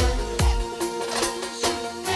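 Tallava band music without vocals between the singer's lines: held notes over a drum beat, with deep drum hits that fall in pitch.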